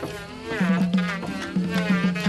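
Electric hand planer running as it shaves a wooden boat plank, its motor buzzing. Rhythmic music with a steady beat plays along with it.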